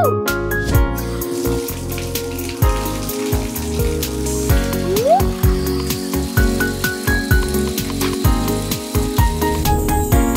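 Tap water running into a bathroom sink and splashing over hands being washed, under upbeat background music with a steady beat.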